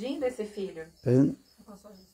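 A man's voice speaking over a microphone in short phrases, with faint high chirping of crickets behind it.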